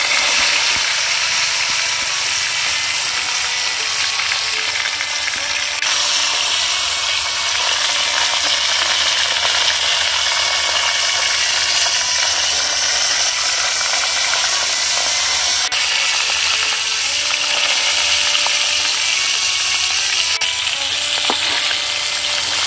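Koi fish (climbing perch) sizzling loudly as they fry in hot oil in a wok. The sizzle starts suddenly as the first fish goes in and grows brighter about six seconds in.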